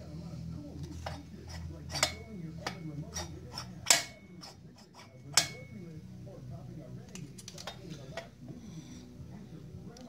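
Scattered sharp metallic clicks and clinks, some briefly ringing, as a 56 mm big-bore chainsaw cylinder is pressed and rocked on a Huztl MS660 clone crankcase; it won't seat fully with the piston at top dead centre. The loudest click comes about four seconds in.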